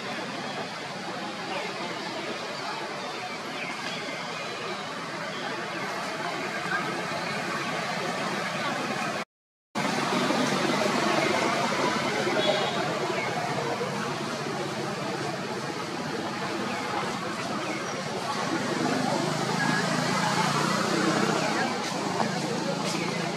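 Indistinct voices over a steady outdoor background noise, with a brief cut to silence about nine seconds in.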